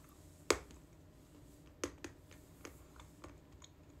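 Crunchy almond snack being chewed close to the microphone: a sharp crunch about half a second in, then several smaller, irregular crunches.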